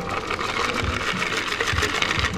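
Cocktail being strained from a stainless steel shaker tin into a martini glass: a steady stream of liquid pouring with a fine, crackly hiss.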